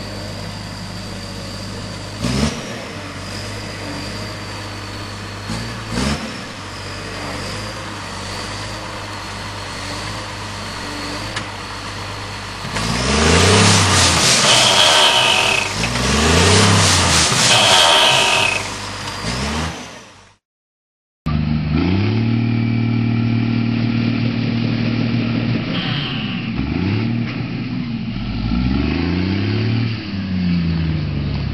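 Coe self-propelled tree shaker's engine running steadily, with two sharp knocks. It then revs up and back down twice with a loud rattling rush as the shaker head shakes a tree trunk. After a brief cut, the engine runs on and revs again near the end.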